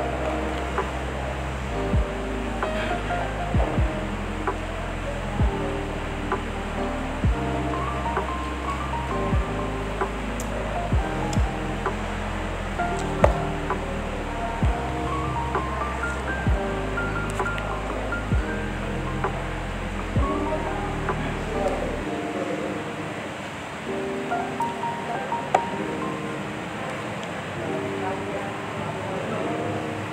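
Background music with a steady beat, a bass line and a melody. The bass drops out for the last few seconds.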